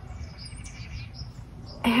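Small birds chirping in the background: several faint, short, high chirps, over a steady low rumble.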